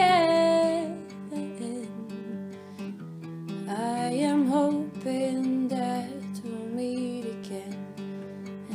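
Acoustic guitar strumming a slow accompaniment. A singer's voice holds a long note at the start, fades about a second in, and returns in melodic phrases from about four seconds in.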